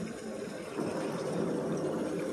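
Water splashing and trickling as a cast net is hauled up out of shallow water, a little louder from about a second in.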